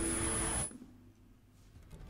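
Hot 97 logo sound effect playing from the video on screen: a held, chord-like tone with a hiss over it that cuts off suddenly about two-thirds of a second in, leaving a quiet stretch.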